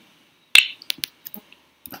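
A few sharp clicks of a computer keyboard and mouse as a value is typed into a field, the loudest about half a second in, then several lighter clicks.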